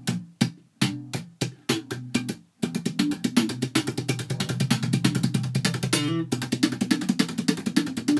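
Electric bass played slap style: evenly spaced slapped notes, then about two and a half seconds in a fast, dense run of triplets mixing thumb slaps with muted left-hand hits, a percussive drum-like technique.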